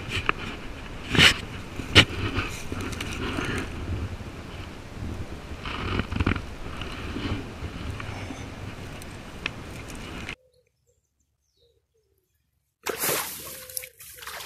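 Handling noise on a body-worn action camera: clothing rubbing and brushing over the microphone, with two sharp knocks in the first two seconds, while a fish is landed in a landing net. Near the end the sound cuts out entirely for about two and a half seconds.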